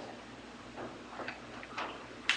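A few faint, irregularly spaced clicks and taps from objects being handled at the altar, over a steady low hum.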